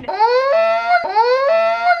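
A woman's voice making two long, high, wordless rising cries, one after the other, each lasting about a second.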